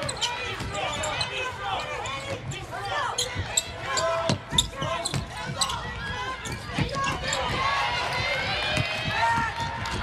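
Basketball dribbling and bouncing on a hardwood court, with sneakers squeaking in short high chirps and players calling out on the floor.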